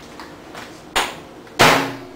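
Two sudden knocks about half a second apart, the second louder, like a bump or thud close to the microphone.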